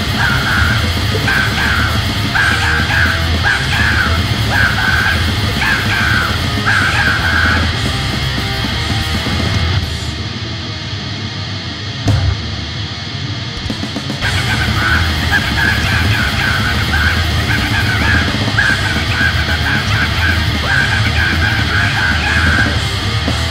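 Fast, distorted hardcore punk (powerviolence) recording: guitars and drums with harsh shouted vocals. The vocals run through the first several seconds and return in the second half. In between, the band drops to a quieter, thinner passage for about four seconds.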